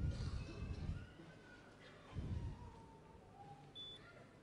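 Faint, low, muffled rumbling and bumping from handling close to the microphone. Near the end comes a single short high beep from a blood glucose meter, typical of the meter registering the sample on its test strip before it counts down to a reading.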